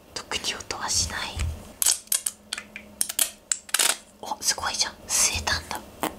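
Sticky, wet clicks and squelches of slime being pressed out of a plastic syringe and pulled off a wooden tabletop, mixed with a man's close whispering.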